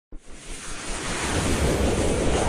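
Intro sound effect: a rushing whoosh of noise that starts abruptly and swells steadily louder.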